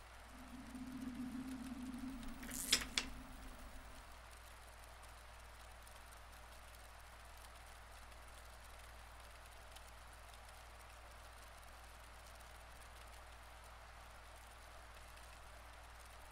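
Quiet room tone. A low hum runs for the first few seconds, broken by a single sharp click about three seconds in, then only a faint steady hiss.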